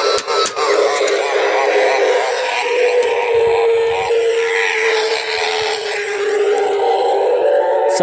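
Spirit Halloween jumping pop-up zombie animatronic's small built-in speaker playing its recorded scare soundtrack, a continuous music-like track with a voice in it. Two sharp clicks come just after the start.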